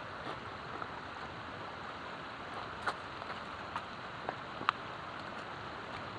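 Shallow creek running over rock ledges in a steady hiss, with a few short sharp clicks scattered through the middle.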